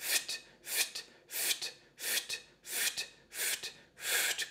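A voice repeatedly spitting out a breathy 'f' followed straight away by a sharp 't', unvoiced, about six f-t pairs at an even pace of roughly one every two-thirds of a second. It is a singer's breath-support exercise: each pair is pushed out by the belly and core muscles contracting.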